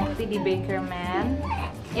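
Background music with brief high, wavering whimpering cries over it around the middle.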